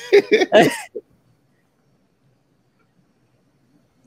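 A man laughing in several short breathy bursts during the first second, then near silence.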